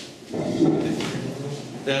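A man speaking in a lecture room, his words indistinct, after a brief pause at the start.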